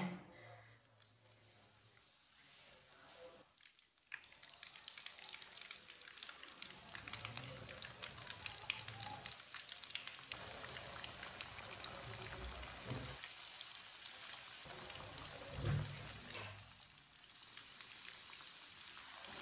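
Cauliflower chapli kababs shallow-frying in hot oil in a pan: a fine crackling sizzle starts about four seconds in and grows as more patties go into the oil. There is a soft bump a little before the end.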